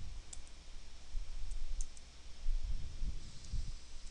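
A few faint, sharp clicks at a computer desk over low rumbling bumps.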